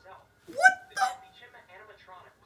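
A person making two short, loud, high-pitched hooting cries about half a second apart, the first sliding up in pitch, in the manner of a monkey imitation.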